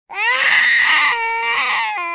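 A 9-month-old baby's loud screaming cry: one long held wail that rises in pitch just after it starts, then steps slightly lower a little past halfway.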